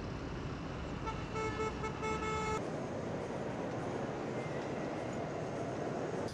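Steady road traffic on a busy avenue, with a vehicle horn honking a few short times between about one and two and a half seconds in.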